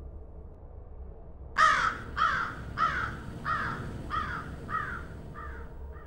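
A crow cawing, seven caws about 0.6 s apart starting about a second and a half in, each falling in pitch and each fainter than the one before, over a faint steady low background.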